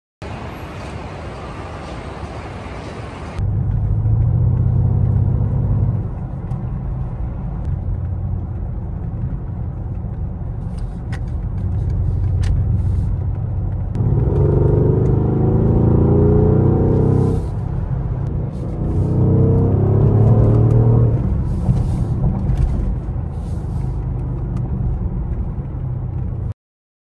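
Mercedes-AMG SUV driving, heard from inside the cabin: a steady low engine and road rumble. The engine note rises under acceleration twice, about halfway through and again a few seconds later.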